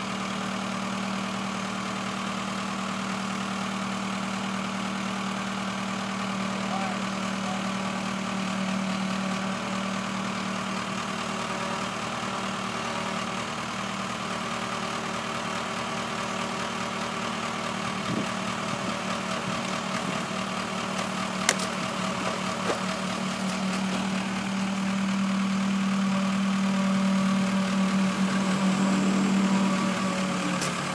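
Tractor backhoe engine idling steadily, with one sharp knock about two-thirds of the way through. The engine grows louder over the last few seconds.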